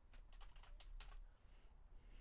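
Faint computer keyboard typing: a quick run of about half a dozen keystrokes in the first second or so as a word is typed out, then quiet keys.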